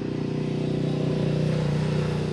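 A road vehicle's engine running steadily, slowly growing louder as it approaches.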